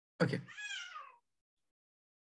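A single short, high-pitched animal call, falling in pitch and lasting about half a second, right after a spoken "okay".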